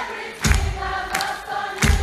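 Live rock band playing through a phone microphone: heavy drum hits about every second and a half under held sung notes, with many voices singing together.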